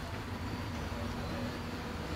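Steady low outdoor rumble with a faint steady hum and no distinct event.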